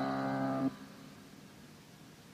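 The last held, ringing chord of a punk rock song on a 1984 cassette demo recording, cutting off suddenly about two-thirds of a second in. After it only faint cassette tape hiss remains.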